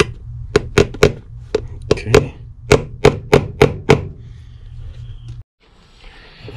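Hammer tapping new nails into a shoe's heel to start them in their holes: about a dozen sharp taps in quick groups of two and three, stopping about four seconds in.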